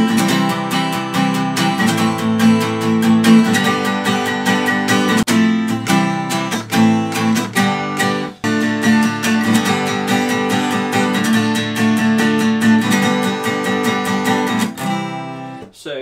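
Acoustic guitar strummed with steady, all-down strums through an Fmaj7, C, A minor, G chord progression, several strums a second, stopping shortly before the end.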